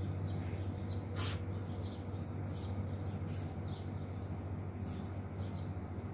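Birds chirping in short, irregular calls over a steady low hum, with a brief rustle about a second in.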